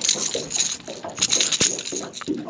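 A small largemouth bass shaking on the line, making its lipless rattling crankbait clatter in quick clusters of sharp clicks.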